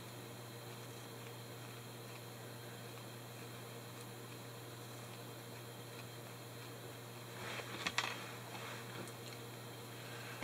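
Steady low background hiss and hum of a quiet room. A brief cluster of faint rustles and taps comes about seven and a half seconds in.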